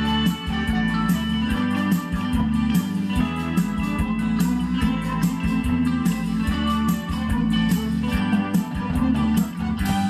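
Live amateur rock band playing an instrumental passage: electric guitars over a drum kit, with the drums keeping a steady beat.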